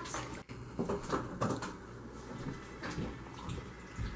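Quiet room tone at a dinner table with a few faint short clicks and knocks, typical of forks and knives on plates.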